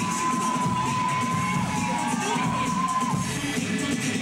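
Audience cheering and screaming over a dance track, with one high-pitched scream held for about three seconds.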